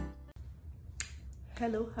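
Music cuts off at the start, leaving quiet room tone with a single sharp click about a second in; a woman begins speaking near the end.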